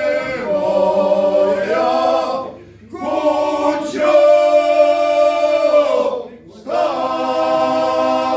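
A men's group singing ganga, the unaccompanied Herzegovinian folk polyphony. The voices hold long notes together and break off twice for a short breath, about two and a half and about six seconds in.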